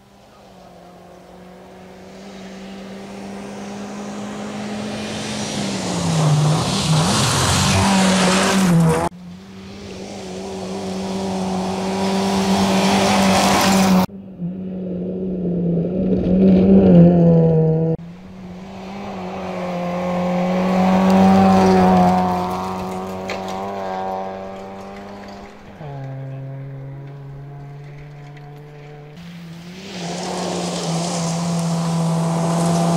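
A rally car driven hard on a gravel stage, its engine held at high revs as it approaches. The sound comes in several stretches that each grow louder as the car nears and then cut off suddenly.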